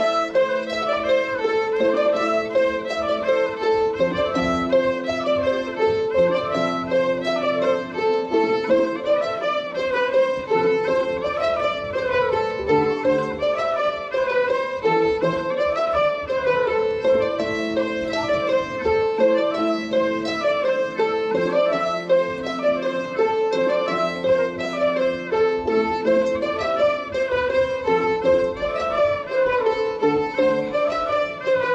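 Traditional Haute-Bretagne dance tune, a ridée, played by a small folk ensemble of Celtic harps, diatonic accordion, two flutes and fiddle. The band comes in together at the start and plays a lively melody in short repeating phrases.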